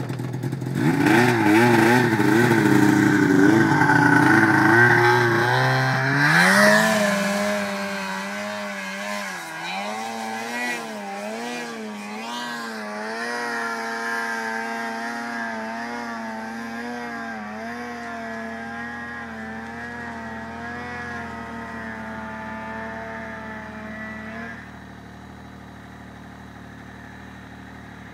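Snowmobile engine running under throttle, loudest over the first six seconds. Its pitch then steps up and wavers up and down as the revs change. It fades gradually and drops quieter a few seconds before the end.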